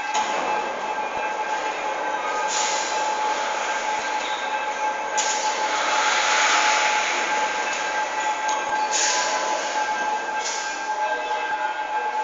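Festoon cable system in motion: a steady mechanical rolling run with a constant whine, like wheels on a track, and a hiss that swells and drops several times.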